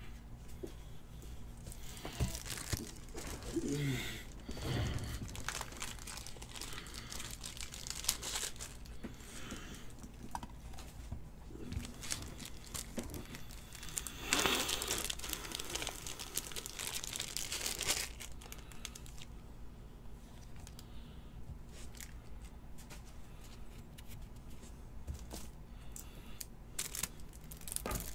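Hands handling crinkly plastic packaging, with card sleeves or pack wrappers rustling and crinkling in several irregular bursts and small clicks and taps in between.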